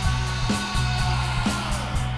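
A post-punk band playing live: distorted electric guitar, bass and drums on a steady driving beat, with cymbal strikes about four times a second.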